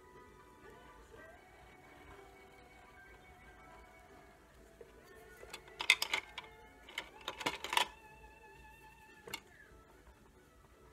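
Soft background music with sustained tones. Twice, about six and seven and a half seconds in, a short clatter of wooden coloured pencils knocking together in a pencil pot as one is put back and another taken out.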